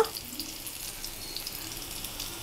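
Baby potatoes frying in shallow oil in a pan: a soft, steady sizzle.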